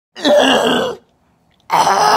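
A man's voice making two loud wordless vocal sounds, the first about a second long and the second starting near the end.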